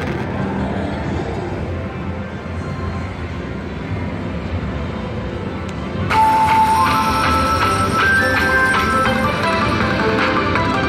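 Mighty Cash slot machine over a steady din of casino machine sounds. About six seconds in, it breaks into a louder, bright chime melody whose notes step upward as it cashes out the credits and prints a voucher.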